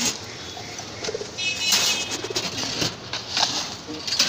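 Domestic pigeons cooing in a wire cage, low murmured coos, with a few short rustling noises in between.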